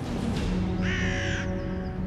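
Soundtrack music with held tones, and a single harsh crow caw about a second in, lasting under a second.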